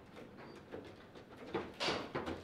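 Table football play: light clicks and knocks of the rods, handles and plastic men against the ball, with a louder knock cluster near the end.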